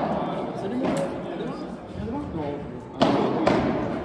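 Padel ball being struck and bouncing during a rally: a sharp pop about a second in, then two more about half a second apart near the end, each echoing briefly.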